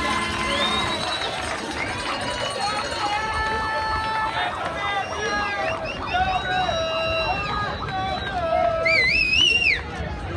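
A crowd shouting and cheering, with many long held calls overlapping. A high, wavering call rises and falls near the end.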